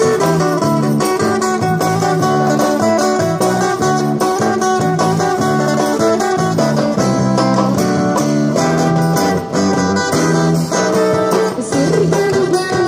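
Live busking band playing an upbeat dangdut song, guitar to the fore over a steady beat.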